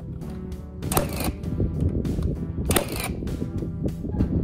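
Two shots from a Milwaukee Fuel cordless nailer, about a second and three-quarters apart, toenailing studs into the top plate, over background music.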